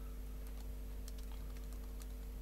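Faint, scattered keystrokes on a computer keyboard over a steady low electrical hum.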